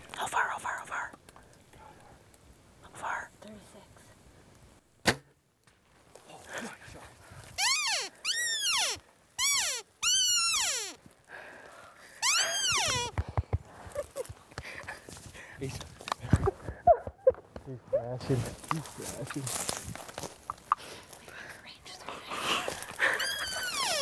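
A single sharp snap about five seconds in, typical of a compound bow's release, then hushed whispering and a run of high, excited squeals that rise and fall in pitch, each about half a second long.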